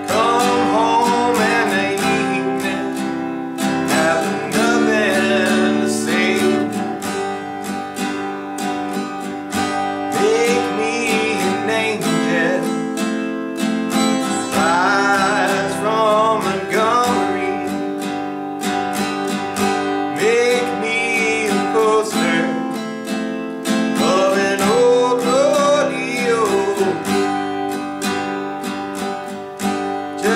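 Acoustic guitar strummed steadily through G, C, F and D chords, with a man singing along.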